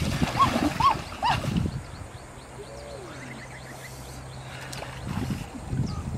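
Water splashing as hands thrash in a shallow muddy stream to grab fish, with a series of short rising-and-falling calls over the first second and a half. It goes quieter in the middle, and the splashing picks up again near the end.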